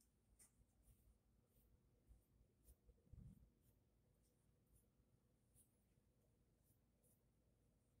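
Near silence, with faint rubbing and scratching from an alcohol-dampened cotton pad being wiped across the forehead and hairline, and a soft low bump about three seconds in.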